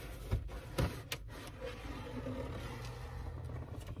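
Cardboard cake box being handled and opened, with a few sharp knocks in the first second and then soft scraping and rubbing. A steady low hum runs underneath.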